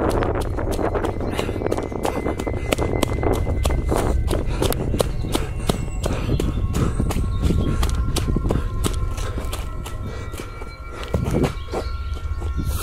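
Running footsteps pounding on a dirt path at about three or four strides a second, with wind and handling rumble on a jolting handheld microphone.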